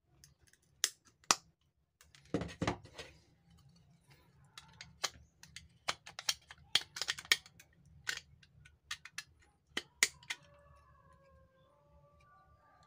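Pliers biting through and snapping off bits of a hard plastic radio battery cover: a run of sharp snaps and clicks, two loud ones about a second in and a busy cluster in the middle, with a short scrape of the plastic being handled.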